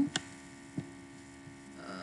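Steady low electrical hum on the recording, with two short mouse clicks, the first just after the start and a fainter one near the middle.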